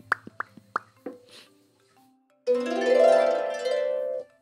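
Harp: a few short plucked notes, then about halfway through a glissando swept across the strings, many notes ringing together loudly.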